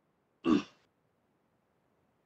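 A man clears his throat once, a single short burst about half a second in, heard over a video-call connection.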